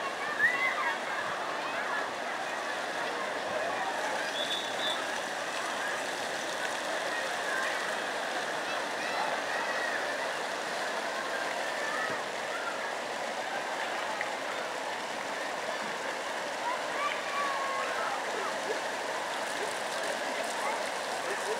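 Steady rushing and splashing of water from fountain jets and a water-cannon spray falling into a pond, with faint distant voices over it.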